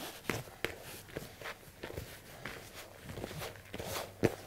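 Hands kneading and squeezing crumbly cake-mix and butter dough in a plastic mixing bowl: soft, irregular knocks and rustles.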